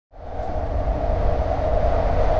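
Steady low mechanical rumble with a steady mid-pitched hum over it, fading in quickly at the start.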